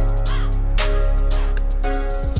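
Background music with a deep, steady bass and a regular beat.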